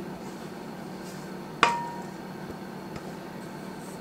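A single sharp clink with a short ringing tone about a second and a half in: a utensil knocking against the mixing bowl as thick cake batter is scraped out into a baking pan. Otherwise only a faint steady background.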